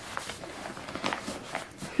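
Fabric rustling with a few soft scuffs as a changing pad is pushed into a snug back pocket of a fabric diaper backpack.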